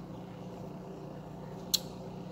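Steady low mechanical hum with faint steady tones, and one sharp click near the end.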